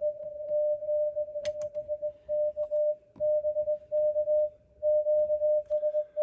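Morse code (CW) signal from a ham radio transceiver's speaker: a single steady tone keyed on and off in dots and dashes over a faint noise floor. It comes through much more clearly with the noise phased out by a QRM Eliminator. There are two short clicks about a second and a half in.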